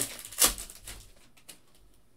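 Foil trading-card pack wrapper crinkling as it is pulled open, with one sharp crackle about half a second in, then a few faint clicks of handling.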